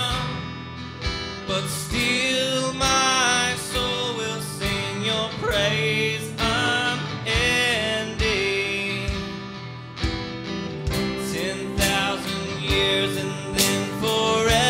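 Live worship song: a man singing over electric guitar, with a steady beat under it.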